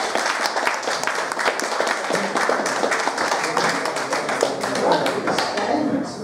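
Audience applauding after a song, a dense patter of hand claps with voices mixed in, stopping near the end.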